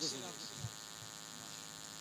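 Steady low electrical hum and hiss from a public-address system. The last of a man's voice dies away through the loudspeakers at the start, and there is one faint low thump a little after half a second.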